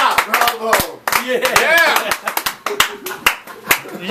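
A small audience clapping, with voices shouting and cheering over the claps, at the end of a song.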